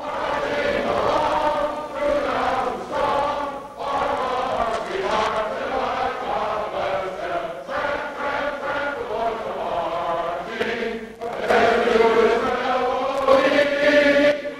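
A large crowd singing together in unison, phrase after phrase, with a dip near the middle and a louder swell toward the end.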